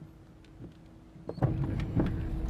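Inside a car: a faint low hum with a steady tone, then a loud low rumble sets in suddenly about one and a half seconds in.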